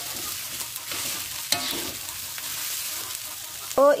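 Fried rice sizzling steadily in a hot wok as it is stirred and tossed with a metal spatula. The spatula scrapes and clicks against the wok, loudest about a second and a half in.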